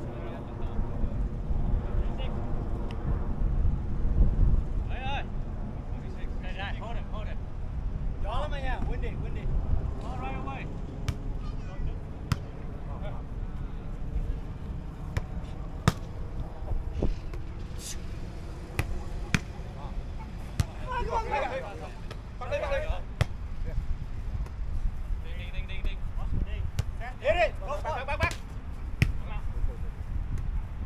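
Volleyball rally on grass: a series of sharp, irregularly spaced slaps of hands and arms striking the ball. Players' voices call out now and then over a steady low rumble.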